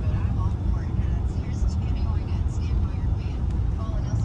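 Steady low rumble of a pickup truck's engine and tyres heard from inside the cab while driving in city traffic.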